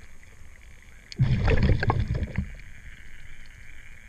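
Underwater, a scuba diver's regulator exhaust releasing a burst of exhaled bubbles about a second in, lasting about a second. A steady hiss sits underneath.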